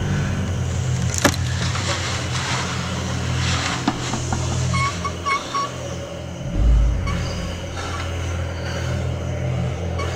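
A steady, low rumbling drone from a horror film's sound design, with a sharp click a little over a second in.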